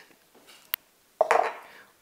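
Kitchen utensils being handled: a single sharp click, then a brief clatter a moment later.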